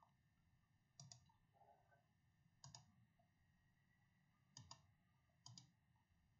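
Near silence broken by four faint computer mouse clicks, irregularly spaced, each a quick double tick.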